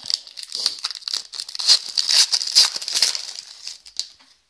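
Foil trading-card pack wrapper crinkling as it is torn open and handled: a dense crackly rustle, loudest in the middle and dying away near the end.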